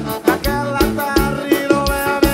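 Forró band music played live: an accordion melody of held notes over a steady drum beat.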